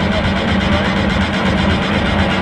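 Loud arena PA music with heavy bass and a steady electronic beat, over the general noise of the crowd and rink.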